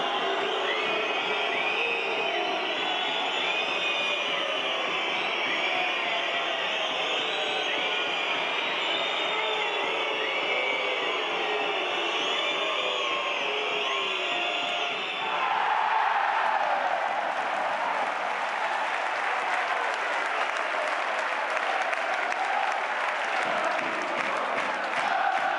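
Ice hockey arena crowd with many overlapping shouts and calls. About fifteen seconds in it switches abruptly to louder, dense cheering and applause.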